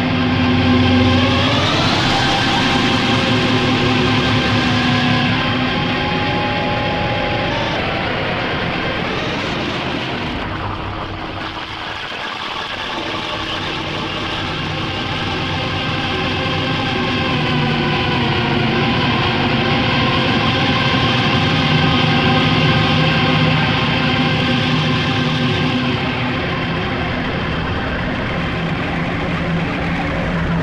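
Post-industrial power-electronics drone: a dense, loud wall of layered electronic tones and noise, with rising pitch glides in the first few seconds. It thins and dips around the middle, then swells back to full level.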